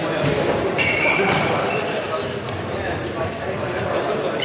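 Indoor futsal play on a wooden court: shoe soles squeak sharply on the floor several times, the ball knocks on the boards, and players' shouts echo around a large hall.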